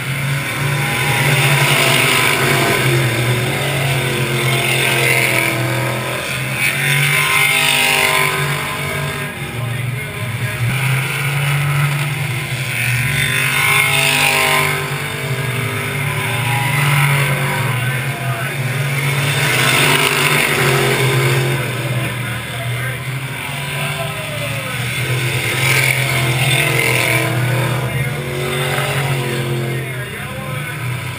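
Stock car engines running laps on a short oval. The sound swells loudly as cars come by and fades as they go round the far end, several times over, with the pitch gliding as each car passes.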